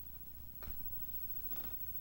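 Domestic tabby cat purring while dozing, a low steady rumble close to the microphone, with a soft click about half a second in and a short breathy rasp near the end.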